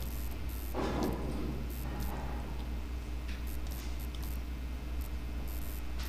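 Quiet room tone with a steady low electrical hum from the recording setup, and a brief soft rustle about a second in.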